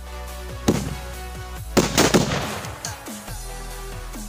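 Sutli bomb firecrackers going off under a small LPG cylinder: one sharp bang a little under a second in, then a quick cluster of bangs about two seconds in, over background music.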